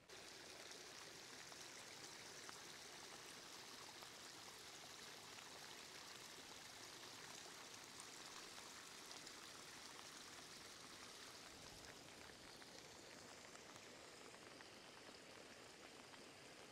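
Faint, steady hiss of falling rain and runoff water trickling.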